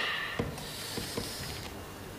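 A man sucking air in through clenched, bared teeth in a drawn-out hiss that stops just before the end, with three soft knocks in the first second and a half.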